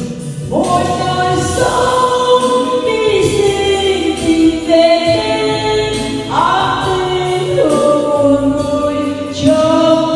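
A woman singing a slow Vietnamese hymn into a handheld microphone over musical accompaniment, in long held notes that step to a new pitch every second or two.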